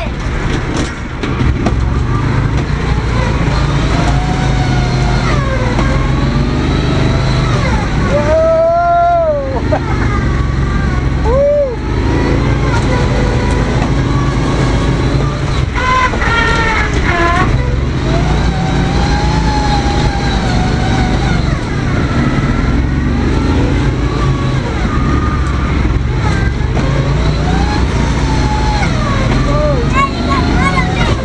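Off-road vehicle engine running under load while driving through mud, its pitch rising and falling as the throttle changes.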